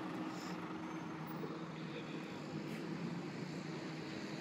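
A city bus engine running with a steady low hum, over the general noise of street traffic.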